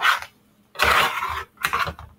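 A utensil stirring and scraping chicken Alfredo pasta around a skillet: three rasping strokes, the longest about a second in.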